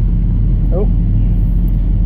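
Mazda MX-5 NB facelift 1.8-litre four-cylinder engine idling steadily on a rolling road, a low even hum.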